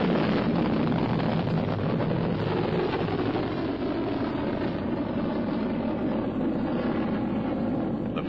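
Solid-propellant rocket motor of a Polaris missile burning steadily as the missile climbs after launch, its noise easing slightly toward the end.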